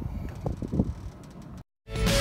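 Wind rumbling on the microphone, with a few soft bumps about half a second in; the sound cuts out briefly and music starts right at the end.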